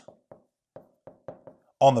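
About six light taps, short and irregularly spaced, over under two seconds; a man's voice comes back in near the end.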